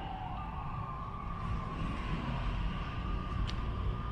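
Distant emergency-vehicle siren wailing. Its pitch slides down, jumps up just after the start and then holds nearly steady. A steady low rumble runs underneath.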